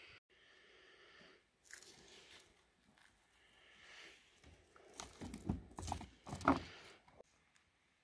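Faint rustling, then a few irregular knocks and scrapes in the second half: rock samples being handled and shifted against each other on a hard surface by a gloved hand.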